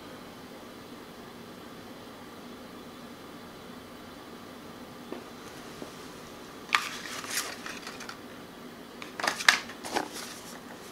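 Steady low room hum. Brief rustling and clicking handling noises come about seven seconds in and again, louder, near the end.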